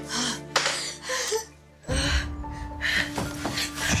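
Sustained dramatic background score with several sharp gasping breaths over it; the music drops away briefly just before two seconds in, and a new low, held cue takes over.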